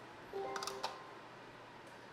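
Amazon Alexa smart speaker giving its short electronic confirmation chime, a few steady tones lasting about half a second with a faint click at the end, acknowledging a voice command to switch off a group of shop lights.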